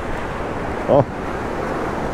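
Surf washing in over the shallows, a steady rushing noise with wind on the microphone. A short vocal sound from the angler comes about a second in.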